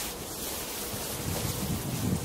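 Wind buffeting the microphone: a steady rush of noise, with low rumbling that grows near the end.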